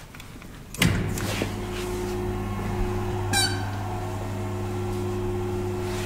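Hydraulic platform lift's pump motor switching on with a sharp start about a second after its button is pressed, then running with a steady hum as it drives the platform. A short high squeak partway through.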